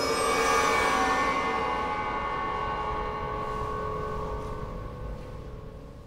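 A dense, sustained mass of many ringing tones from the strings of a piano string frame (the Chordeograph), set vibrating by a strip held against them. The sound slowly fades and dies away near the end.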